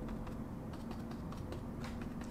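Paintbrush dabbing and tapping short strokes of acrylic paint onto a stretched canvas: a quick, irregular run of faint clicks over a low steady hum.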